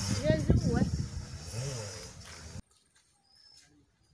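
A woman talking, her voice trailing off, then cut off abruptly about two and a half seconds in, leaving near silence.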